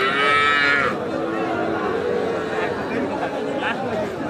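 A calf moos loudly in the first second, a single call under a second long, over steady crowd chatter.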